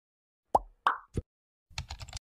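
Intro-animation sound effects: three short pops about a third of a second apart, the first sliding down in pitch, followed near the end by a quick run of keyboard-typing clicks.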